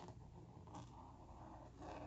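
Faint strokes of a Tombow brush pen's tip on sketchbook paper, over near silence and a low steady hum.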